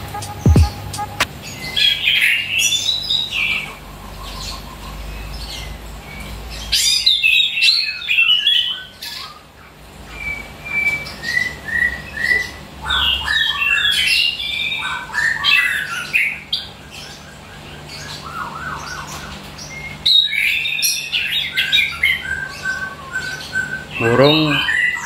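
A chestnut-capped thrush (anis kembang) singing in a cage: bursts of quick, varied whistled phrases with short pauses between them. The bird is singing freely just after its moult.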